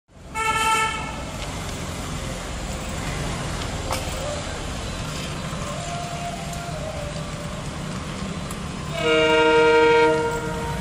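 Twin ALCO WDM-3D diesel locomotives chugging with a steady low throb as they pull a train away. A short train horn blast comes right at the start, and a louder, longer multi-note horn blast sounds about nine seconds in.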